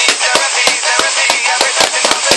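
Drum kit struck with sticks over a playing song: a fast run of hits, about five or six a second, like a fill.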